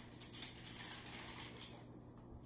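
Faint rustling and crinkling of parchment paper being peeled back from a freshly baked loaf.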